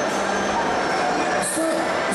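Steady background noise with a constant low hum filling a pause in speech, and faint voice-like sounds toward the end.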